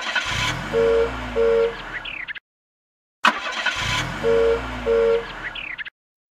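Cartoon car sound effect: an engine running up with two short horn beeps, played twice with about a second of silence between.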